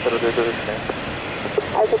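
Portuguese radio speech in short phrases, typical of air traffic control, heard over a steady rushing background noise. The voice breaks off about half a second in and comes back near the end.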